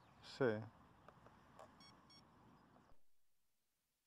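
Faint open-air background with one short voice-like call, falling in pitch, about half a second in, and a few faint ticks after it. The sound cuts out to silence about three seconds in.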